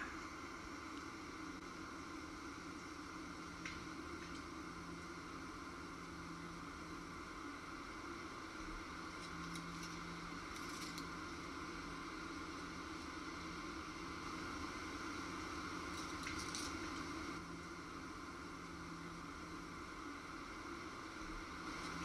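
Faint, steady outdoor background hiss with a gentle swell about two-thirds of the way through and a few soft rustles.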